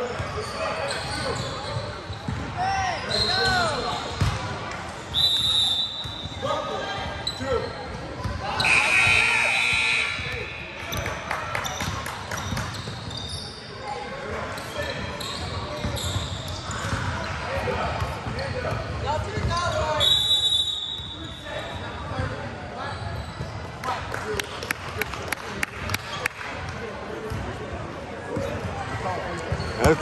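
Basketball game in a large gym: balls bouncing on the hardwood court, sneakers squeaking, and spectators' voices echoing, with a few short, high squeals.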